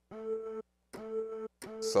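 A pitched sample played back from a software sampler: the same note struck three times, each held about half a second at a steady pitch. The note is not yet tuned to C.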